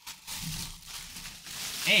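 Packaging being handled and pulled off by hand, rustling and crinkling irregularly as a football helmet is unwrapped.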